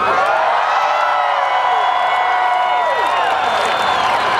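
Large concert crowd cheering and screaming, many voices holding long high whoops, some of which tail off after about three seconds.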